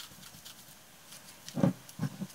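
Light handling noise from painting at a table, faint scattered clicks, then one short thump about one and a half seconds in.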